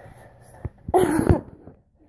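A child's short, breathy vocal outburst, like a cough, about a second in, after a single faint click.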